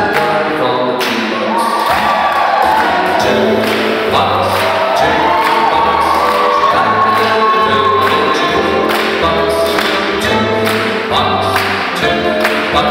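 Live big band playing swing music with a steady beat, loud and continuous.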